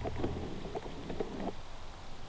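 Light, irregular rustling and crackling from close movement, with a low steady hum that stops about half a second in.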